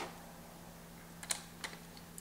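Faint clicks and taps of a small screw and screwdriver being handled on the underside of a ThinkPad T61 laptop as the drive-bay screw is put back: one click at the start, then three or four quick clicks about a second and a quarter in.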